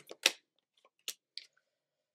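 Tarot cards being handled: a few short, sharp snaps and taps as cards are drawn and laid down, the loudest just after the start and two lighter ones about a second in.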